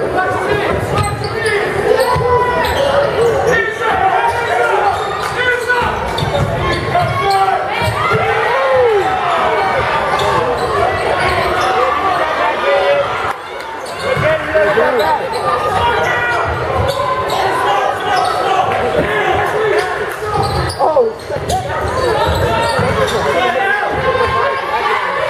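A basketball bouncing on a hardwood gym floor during play, with spectators' voices throughout in a large, echoing gym.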